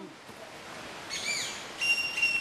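Forest birds giving clear whistled calls: an arched, falling note about a second in, then a long level whistle starting near the end.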